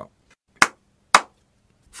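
Two sharp, loud hits about half a second apart, a little over half a second in and again just past one second.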